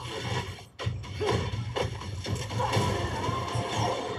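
Movie trailer soundtrack: action music with a sustained low bass and sound-effect hits and crashes, dipping briefly just before a second in before the hits come back in.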